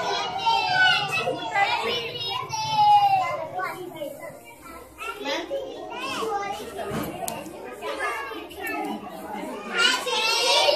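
A crowd of young children chattering and calling out all at once, with a brief lull about halfway through before the voices pick up again.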